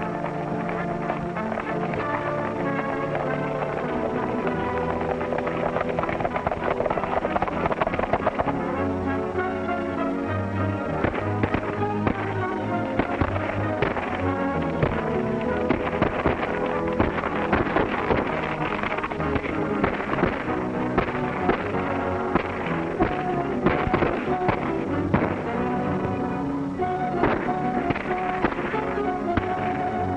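Dramatic film score music with many sharp knocks mixed in; the knocks grow more frequent and louder from about ten seconds in.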